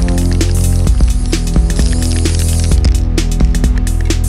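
Electronic background music with a steady beat.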